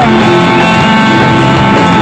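Live rock band playing, with electric guitar to the fore; one long note is held through most of the stretch.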